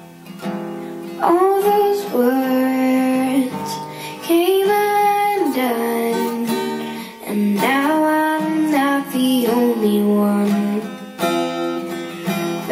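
A girl singing to her own strummed acoustic guitar, the guitar keeping steady chords under a gliding vocal melody.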